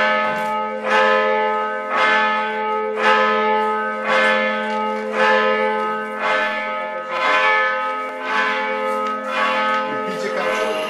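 A church bell tolling about once a second, each stroke ringing on into the next.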